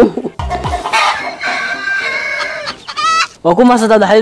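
A short low thump, then a rooster crowing: one long call of about two seconds that rises in pitch at its end.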